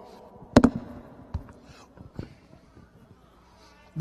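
Handling noise from a handheld microphone at a pulpit: two quick sharp knocks close together about half a second in, then a few fainter clicks.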